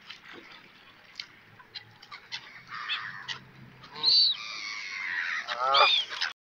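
Pond birds calling around the feeding spot: scattered short calls, then a high arched call about four seconds in and a louder call near the end.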